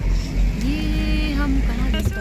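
Low steady rumble of a vehicle's engine and tyres heard from inside the cabin as it rolls slowly along a rough dirt lane. About a second in, a person's voice holds one long note.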